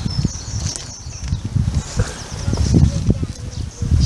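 Wind buffeting a hand-held microphone outdoors: an uneven low rumble with rustling over it.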